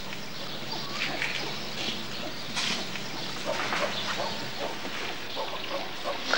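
Soft, irregular rustling and breathy noises as a man and an adult male gorilla move against each other in a bed of straw, over a low steady hum.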